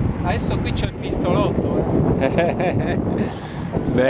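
Wind buffeting the microphone and tyre rumble from a mountain bike rolling along a gravelly road, with brief snatches of voices through it.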